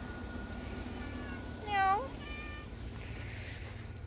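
A domestic tabby cat meows about two seconds in: one short call that rises in pitch, followed by a fainter, shorter one.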